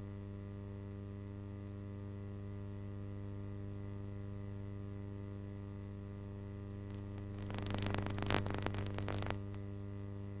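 Steady electrical mains hum with a ladder of buzzy overtones in the VHS playback audio on a blank stretch of tape. About three-quarters of the way in comes a burst of crackling static that lasts nearly two seconds, then the hum alone again.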